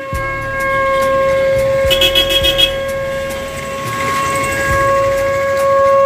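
A conch shell (shankh) blown in one long, loud, steady note with clear overtones, held without a break.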